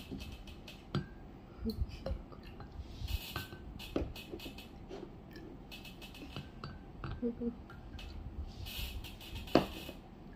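Scattered clinks and knocks of red ceramic bowls against a glass mug and the tabletop as water is poured into it, with a sharper knock near the end and a short laugh.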